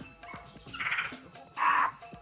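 Two short animal calls, a weaker one about a second in and a louder one near the end, over faint background music.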